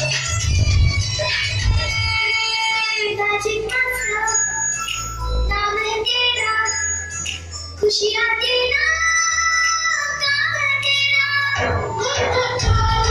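Recorded song with a sung vocal, played for a dance: a heavy beat for about the first three seconds, then held melody and voice with the beat dropped out.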